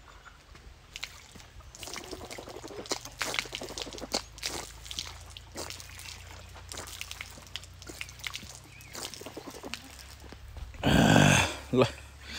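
Water running from an outdoor tap onto a hand and splashing onto wet ground, with irregular splashes and drips. A loud voice comes in near the end.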